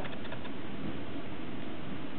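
Steady room noise, an even hiss with no distinct sounds, during a pause in speech.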